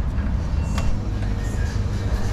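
Steady low rumble of street noise, with a single sharp click a little under a second in as a shop's glass door is pushed open.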